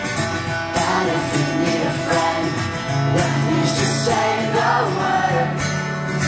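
Amplified live acoustic guitar being strummed, with a male voice singing over it through the PA.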